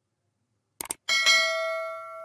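Subscribe-animation sound effect: a quick double mouse click about three quarters of a second in, then a bright notification bell ding that rings on and slowly fades.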